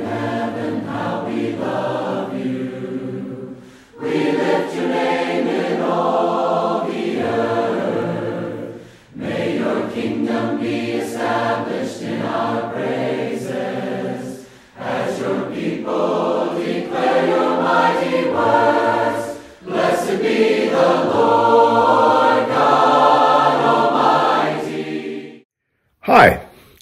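A choir singing in five long phrases with short breaks between them, stopping just before the end.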